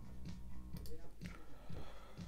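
A drum loop playing back quietly from a multitrack music mix.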